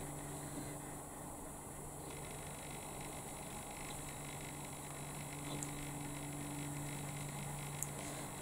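Faint steady hum with an even hiss: room tone, with no distinct sounds from the crochet work.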